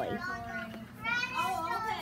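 A child's voice talking, in short phrases that the words around it do not make out.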